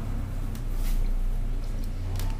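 A few faint clicks of test clip leads being handled and attached to the shifter's wiring, over a steady low hum.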